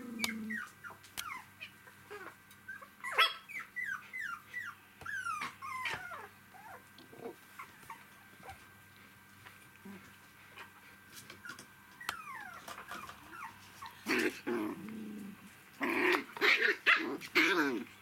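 Three-week-old poodle puppies whimpering and squeaking: a quick run of short, falling squeaks over the first six seconds, then louder yelps mixed with growly squeals near the end as the pups tussle.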